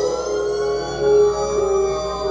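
Electronic dance music played through a large stacked-speaker disco-mobile sound system, with a siren-like synth tone that slowly rises and falls in pitch over the first second and a half over a steady held note.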